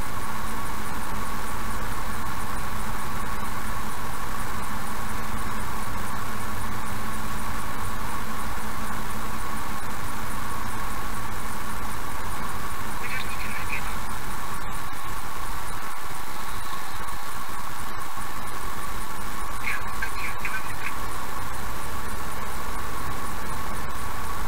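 In-car driving noise picked up by a dashcam at low speed: a steady run of engine and road noise under a constant high-pitched whine. Two short, higher squeaks come through, one just past halfway and one near the end.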